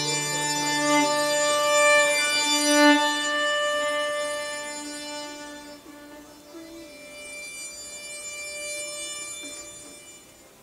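Violin playing long bowed notes over a low drone that stops about two seconds in; the playing swells, then dies away after about three seconds into a softer held note, the closing phrase of the piece.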